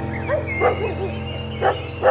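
A dog barking a few short times over steady background music.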